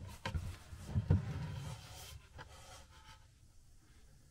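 A cabinet access panel being handled and pulled off its opening: scraping and a few knocks in the first two seconds, the sharpest just after one second, then fainter rubbing.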